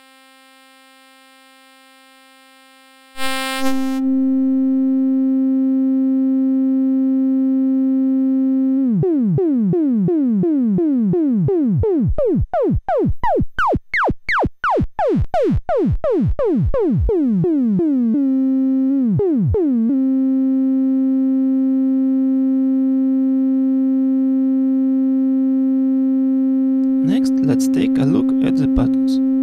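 Analog Eurorack VCO (kNoB Technology η Carinae) comes in about three seconds in with a steady buzzy tone. It then breaks into a run of repeated falling pitch sweeps, several a second, as modulation drives its FM input, before settling back to the steady tone with two more sweeps shortly after.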